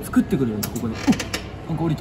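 Coin-operated souvenir medal press working: its rollers, gears and drive chain give several short creaks and squeaks mixed with mechanical clicks.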